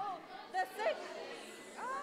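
A group of children chattering, with a few short, high-pitched calls.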